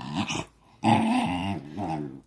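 Small dog growling in short bouts, with a break about half a second in: an annoyed grumble at being held on its back.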